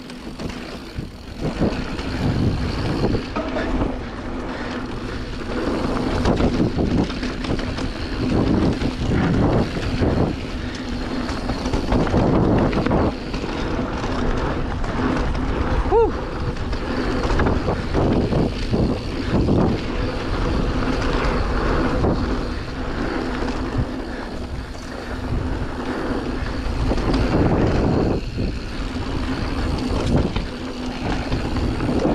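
Canyon Spectral full-suspension mountain bike riding fast down a dirt trail: tyres rolling over packed dirt and leaves, with the bike clattering and knocking over bumps throughout. A short squeak sounds about halfway through.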